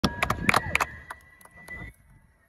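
Live concert sound from within the crowd: a run of sharp claps, most of them in the first second, over a held high tone from the stage PA. The tone fades out near the end.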